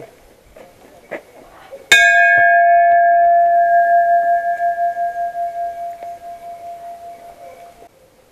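A large hanging metal bell struck once about two seconds in. It rings with a long, wavering tone whose higher notes fade first, and it is cut off abruptly shortly before the end.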